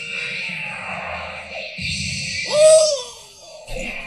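Anime fight-scene soundtrack: background music with hissing effects, and a character's brief falling vocal cry about two and a half seconds in.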